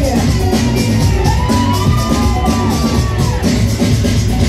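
Live band music: drum kit and bass guitar playing a steady, fast beat. A voice holds one long high note through the middle, rising into it and falling away near the end.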